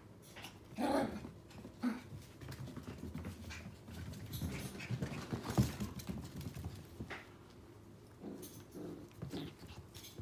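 Eight-week-old dachshund puppies play-fighting, making short dog sounds, with a louder one about a second in. Scattered clicks and knocks come mostly in the middle.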